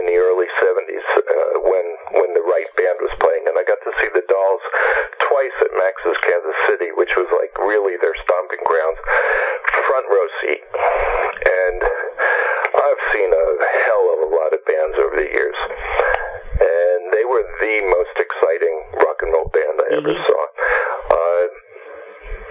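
Only speech: a man talking continuously over a telephone line, the voice thin and narrow-band.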